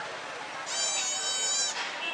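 A loud, high-pitched wavering squeal or bleat with many overtones, lasting about a second and starting a little way in, over the murmur of a crowded street.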